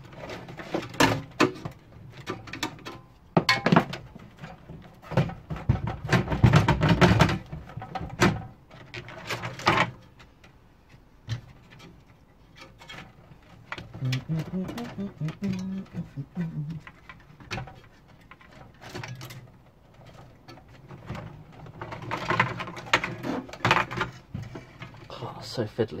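Irregular clicks, knocks and rattles of cable connectors and metal parts being handled inside a 1986 desktop PC's steel chassis as power and ribbon cables are pulled from the drive bay. The knocks cluster in the first ten seconds and thin out after.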